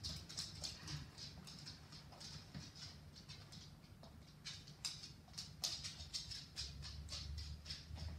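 A puppy's claws clicking on a hard laminate floor as it trots and runs about: quick, irregular taps, over a steady low hum.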